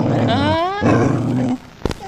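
A loud animal roar, heard as two long roars, with a sharp click just before the end.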